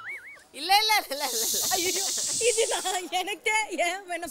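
A hissing noise that starts about a second in and lasts about two seconds, heard over people's voices. Just before it, a short pitched sound rises and falls.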